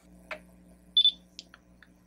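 BW MicroDock II docking station giving one short high beep about a second in as its post-calibration gas purge ends, over the low steady hum of the dock running, with a few faint clicks.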